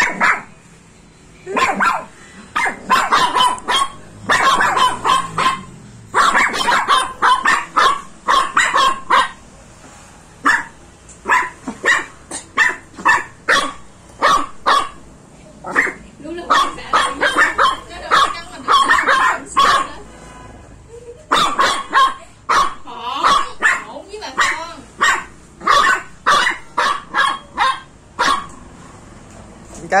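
Small poodle barking in rapid runs of sharp, high yaps, two or three a second, with short pauses between runs, alarm barking at a baby crocodile close by.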